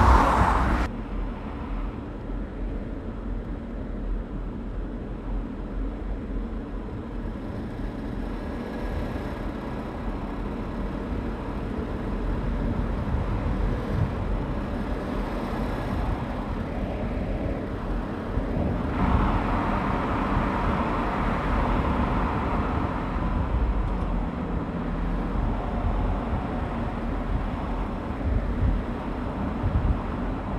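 Audi A8-family sedan driving on a road: a steady rumble of engine and tyre noise. A little past halfway the noise gets louder and brighter.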